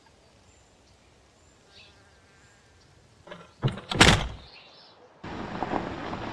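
Low hiss, then a few loud knocks a little after three seconds in, the loudest about four seconds in. About five seconds in a steady rush of noise starts suddenly.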